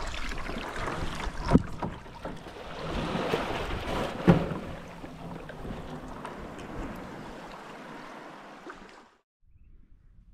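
Water sloshing against a plastic sit-on-top kayak in shallow water, with wind on the microphone and two sharp knocks on the hull, about a second and a half and about four seconds in. The sound cuts out about nine seconds in.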